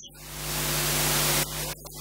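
A loud burst of static-like hiss with a steady low hum under it. It swells for about a second and a half, then cuts off abruptly.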